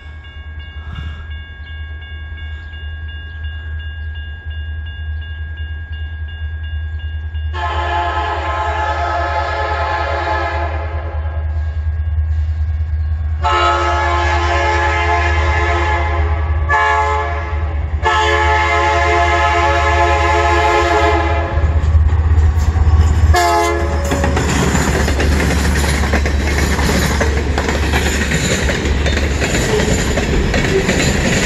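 Diesel freight locomotive's horn sounding the grade-crossing signal (two long blasts, a short and a long), followed by one more short blast, over the steady ringing of a crossing bell. Then the freight cars roll past close by, wheels clattering on the rails, with the locomotive's diesel rumbling low underneath.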